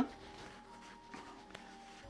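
Faint rubbing of a paper towel over the firm rind of an aged hard cheese wheel, over soft, steady background music.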